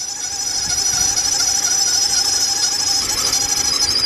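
Car engine's accessory belt drive squealing loudly with the engine running, a steady high-pitched squeal, while WD-40 aerosol is sprayed onto the belt and hisses. The owner suspects the serpentine belt or one of its pulleys.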